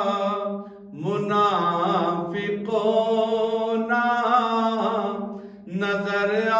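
A man's solo voice chanting a Gujarati manqabat (a devotional praise poem) into a microphone, in long held, wavering notes. One phrase fades out just before a second in and a new one begins, then it breaks again for a breath near the end.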